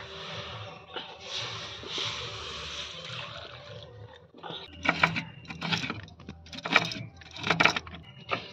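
A metal karai of just-heated water handled on a wood-fired clay stove: a steady hiss for a few seconds, then a run of sharp metal knocks and scrapes as the pan and utensils are moved and set down.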